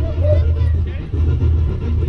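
Indistinct voices over a heavy, uneven low rumble.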